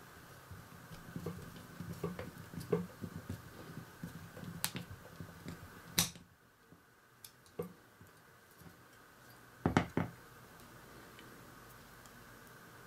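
Small clicks and light scrapes of a model engine-block assembly being handled, with a sharp click about six seconds in and a louder double knock near the end as the part is set down on a cutting mat.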